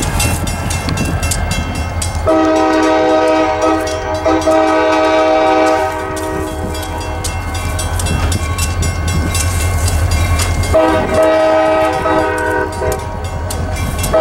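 Diesel locomotive CSX 4429 approaching a grade crossing, its engine rumbling low. Its multi-chime air horn sounds two long blasts, one starting about two seconds in and lasting about three and a half seconds, the second coming near the end.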